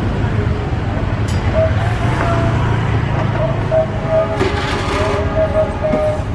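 Indonesian passenger train coaches rolling slowly round a tight curve, with a steady low rumble from wheels and running gear. A wavering pitched tone comes and goes over it.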